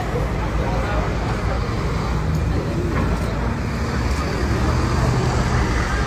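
Steady city street noise: a low traffic rumble with faint voices in it.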